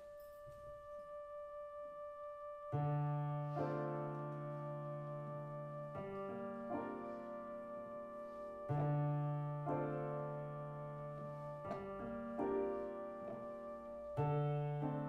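Electronic stage keyboard opening a slow instrumental tune: one held note with a slow pulse, then from about three seconds in, full sustained chords over a low bass note, changing every second or two.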